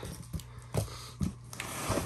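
A few soft taps and a brief rustle, over a low steady hum.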